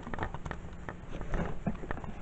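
Faint handling noise: soft scattered clicks and rustles as a furry toy and the recording device are moved about by hand.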